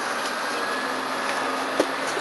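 Steady background noise heard through an old camcorder's microphone, with a faint, steady high-pitched whine over it and one sharp knock near the end.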